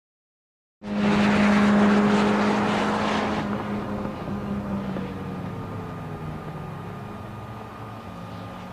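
Peugeot 106 XSi's four-cylinder engine running hard at high revs, a steady engine note that cuts in suddenly about a second in, loudest for the next few seconds and then gradually fading.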